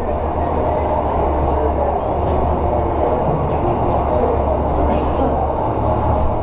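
An ice resurfacer's engine running with a steady low drone, mixed with the hum of the rink.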